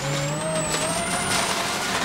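Ford Focus RS WRC rally car's turbocharged four-cylinder engine heard from inside the cockpit, pulling hard through a gear with its note rising over the first second and a half and then holding, over steady road noise from the gravel.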